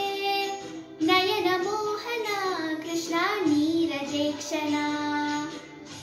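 A girl singing a Sanskrit devotional hymn to Krishna solo, in long held notes with ornamented glides, stopping shortly before the end.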